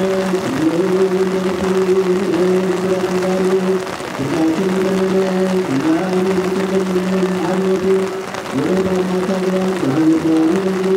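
Ethiopian Orthodox liturgical chant, sung in long held notes of a few seconds each, each note sliding up into its pitch, with short breaks about four seconds in and again near six and eight and a half seconds. Rain falls underneath.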